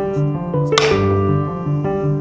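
Background instrumental music with sustained keyboard notes. About three-quarters of a second in comes a single sharp click from a carom billiard shot being played.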